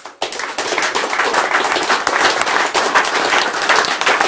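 A small seated audience applauding. The clapping breaks out a moment in and carries on at a steady level.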